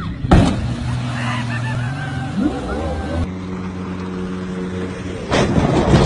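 Motorboat engines running: first one with voices calling out over it, then, after a cut, another engine running steadily. Near the end a loud, rough noise comes in as the boat is driven over gravel.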